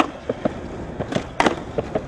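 Skateboard rolling on pavement with sharp clacks of the board hitting the ground: one right at the start, then two close together about a second and a half in, the second the loudest.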